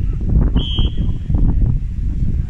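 Wind buffeting the microphone, with one short, steady blast of a referee's whistle about half a second in, signalling that the free kick may be taken.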